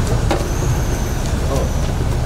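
Loud, steady road traffic noise, with a heavy vehicle such as a bus running close by and people's voices mixed in.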